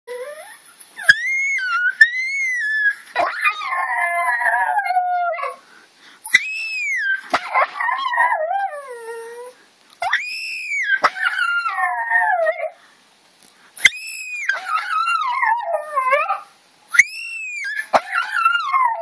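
Small dog howling: five long howls with short pauses between, each starting on a high note and sliding down with a wavering pitch.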